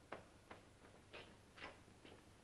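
Near silence with a few faint, irregular clicks or taps, roughly one every half second.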